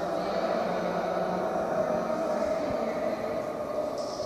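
Indistinct murmur of many voices at a steady level, no single voice standing out.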